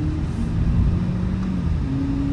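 Audi A5 S Line on the move, heard from inside the cabin: a steady low engine and road rumble. An engine hum drops in pitch shortly after the start and climbs back higher near the end.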